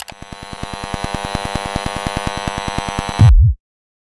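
Logo intro sound effect: a rapid pulsing electronic buzz, about ten pulses a second, that swells for about three seconds. It then stops abruptly on a short, loud, deep hit.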